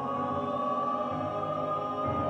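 Mixed chamber choir singing long held chords in a minimalist new-music piece.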